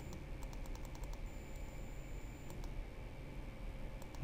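Faint computer mouse clicks: a quick run of them in the first second and a couple more about two and a half seconds in, over a low steady room hum.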